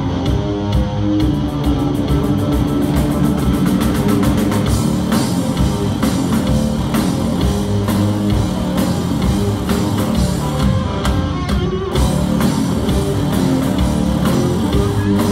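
Live rock band playing loudly: electric guitars, keyboards and drum kit, with a drum roll quickening in the first few seconds.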